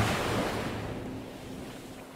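A surf-like rush of noise swells to a peak with a low boom right at the start, then slowly dies away. It is the closing sound hit of a film trailer.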